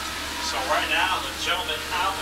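Steady drone of a field of Legend cars, their Yamaha 1,200 cc motorcycle engines running as the pack circles the track. A faint voice talks over it from about half a second in.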